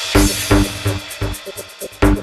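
Electronic house music: a steady kick-drum beat, with a bright crash landing at the start and ringing away over the first second or so.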